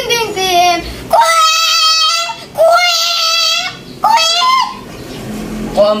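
A high-pitched voice singing a nonsense chant, holding three long wavering notes of about a second each, then starting quick short syllables again at the very end.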